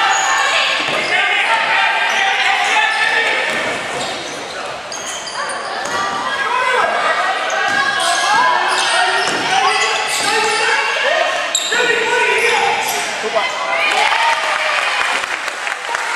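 Basketball being dribbled and bouncing on a hardwood gym floor during play, with players' and spectators' voices calling out across a large hall.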